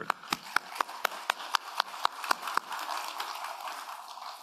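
Audience applause, with one pair of hands close to the microphone clapping steadily about four times a second. The near claps stop about two and a half seconds in and the rest of the clapping fades toward the end.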